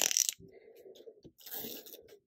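Crumpled paper rustling as it is handled and pressed flat onto a notebook page, with a brief scratchy crinkle about one and a half seconds in.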